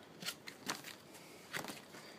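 Paper brochures being handled and shuffled, giving a few faint, short crackles.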